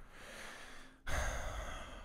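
A person breathing close to a microphone: a faint breath, then a louder, sigh-like breath about a second in that lasts most of a second.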